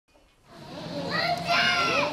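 Children's voices calling out, rising from near silence about half a second in and loudest near the end.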